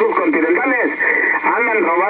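A man's voice speaking in Spanish, received over a Kenwood TS-950SDX HF transceiver. The audio is thin and narrow, as on a radio channel, and he keeps on talking throughout with only brief breaks.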